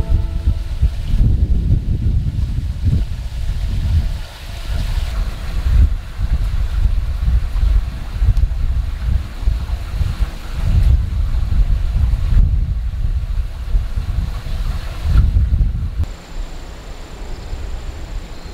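Wind buffeting the microphone: a loud, gusty low rumble that swells and fades irregularly. About two seconds before the end it drops away, leaving quieter ambience with a thin, steady high tone.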